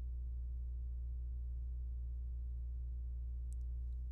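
A steady low electrical hum in the recording, with no speech over it.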